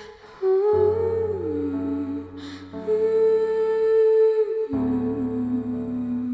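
Slow film-score music: a wordless hummed melody holds long notes and slides between them, over sustained low chords that change about every two seconds.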